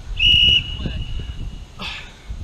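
An interval timer's long electronic beep, loud for about half a second and then trailing off for about another second, marking the start of a work interval. A few sharp clicks sound under the loud part of the beep.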